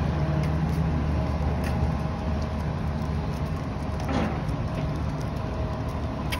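Steady low rumble of city street traffic, with a vehicle engine running nearby.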